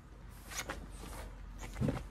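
Movement sounds of a person practising a stick strike on grass: a brief rustle about half a second in and a short, louder low burst near the end, over a steady low rumble.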